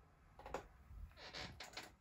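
Near quiet, with faint rustles and a few soft clicks from a handheld camera being moved across a desk.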